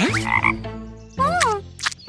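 Cartoon frog croaking, twice: a short wavering croak just after the start and a rising-and-falling call past the middle.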